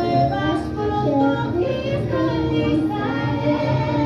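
A girl singing karaoke, her voice carried over the music of a karaoke backing track.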